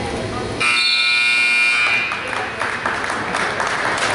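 Gym scoreboard buzzer sounding once, a steady electronic tone lasting about a second and a half, starting just over half a second in. It signals the end of the wrestling match.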